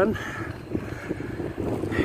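Inline skate wheels rolling steadily over wet concrete pavement, mixed with wind on the microphone.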